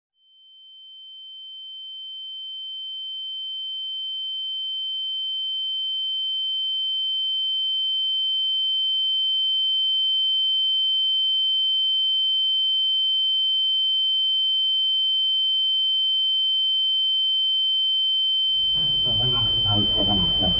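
A single high, pure electronic tone fades in slowly over about ten seconds and then holds steady. Shortly before the end, the murmur of a room full of voices fades in beneath it.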